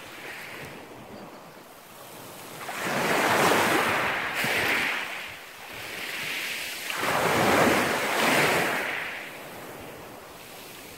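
Small sea waves washing up over a pebble beach. The surf swells loudly twice, about three seconds in and again around seven to nine seconds, and is quieter in between.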